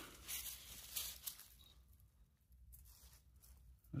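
Faint rustling, with a few brief scuffs in the first second or so.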